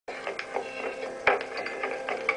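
Irregular mechanical clicking and knocking, with the loudest knock about a second and a quarter in.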